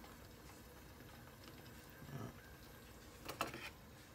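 Faint steady sound of a stockpot of broth simmering on a gas stove, with a single sharp clink of kitchenware about three seconds in.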